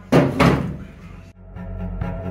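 Two metallic knocks in quick succession as a hand tool is set down on a sheet-steel car floor pan, fading out over about a second before an abrupt cut. Background music plays underneath.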